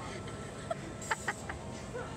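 A person laughing in a few short, quick bursts about a second in.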